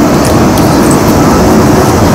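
Loud, steady rumbling handling noise on a camcorder's microphone as the camera is moved and fixed at the waist.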